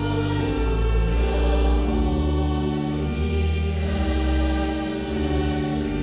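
Church congregation singing a slow hymn together with organ accompaniment, in long held notes that move to a new pitch every second or so.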